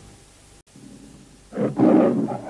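The MGM logo's recorded lion roar, starting about one and a half seconds in: a short roar and then a longer, louder one that runs on. Before it there is only faint tape hiss with a brief dropout.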